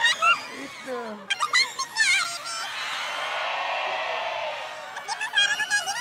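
A voice electronically shifted into a high, squeaky, warbling chatter by a voice-changer headband, in three short spells, with studio audience laughter filling the gap between them.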